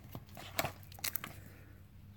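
Baseball cards in plastic sleeves being handled and flipped through, making a few faint clicks and rustles about half a second and a second in.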